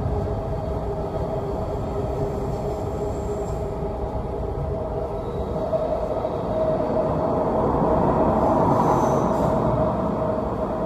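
Train running on the steel-girder railway bridge overhead: a dense rumble with a steady whine, growing louder about seven seconds in.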